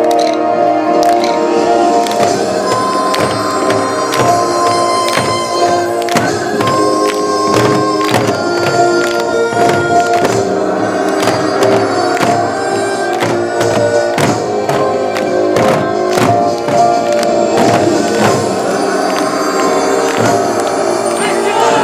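Korean traditional folk music for a drum dance: many drum strokes in a driving rhythm under a line of long, held melody notes.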